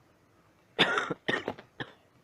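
A person coughing: a quick run of about four coughs starting nearly a second in, the first the longest and loudest, over a faint background.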